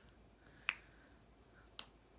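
Two short, sharp clicks about a second apart against quiet room tone.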